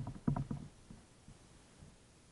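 A quick cluster of knocks from a kayak: several in the first half-second, then a few fainter ones.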